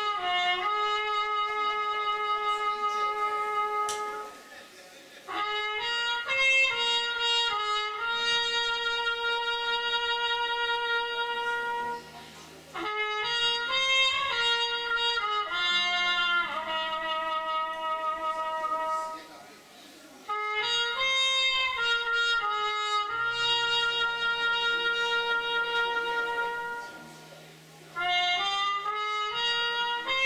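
Trumpet playing a slow melody of long held notes in phrases several seconds long, with short breaks between them, over electric bass and a quiet live band accompaniment.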